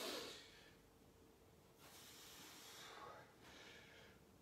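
Faint breathing of a person exercising with dumbbells: a sharp exhale at the start, then a longer, softer breath about two seconds in.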